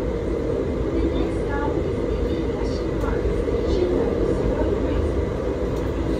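Steady low running rumble of an electric light-rail tram moving at about 40 km/h, heard from inside the car.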